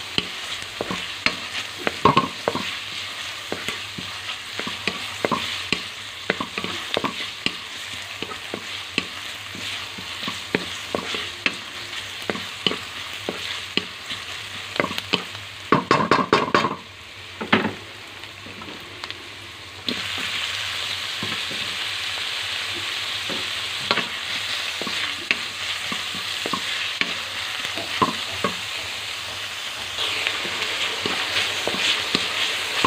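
Chopped vegetables and sliced hot dog sizzling in oil in a metal wok, with a wooden spatula scraping and knocking against the pan as it stirs. A cluster of louder knocks comes a little past the middle; the sizzle then dips for a few seconds before coming back stronger.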